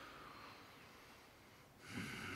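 A man's breathing close to the microphone: a faint breath fading away, then a louder breath starting near the end.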